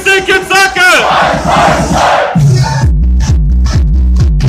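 Party dance music with a crowd shouting over it. About a second in, the music's pitch falls away into a burst of crowd noise. Past the halfway point a heavy bass beat drops in, with fast, even electronic drum hits.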